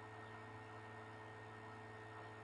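Near silence: faint steady electrical hum with hiss, the recording's room tone.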